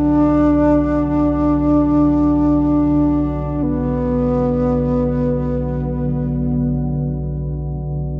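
Alto flute playing two long held notes, the second lower, entering about halfway through, over a steady low ambient drone.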